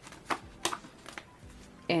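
Sheets of colored cardstock handled and shuffled by hand: a few short, sharp papery rustles and flicks.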